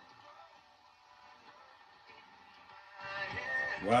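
A 1953 Marconi 341 valve radio plays music from an AM station through its speaker. The sound is faint at first and grows much louder about three seconds in. The reception is poor.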